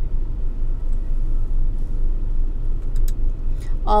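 2023 Volvo XC40 B5's engine idling, heard from inside the cabin as a steady low rumble. A faint click about three seconds in.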